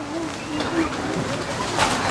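A dove cooing: a few low, wavering notes in the first second.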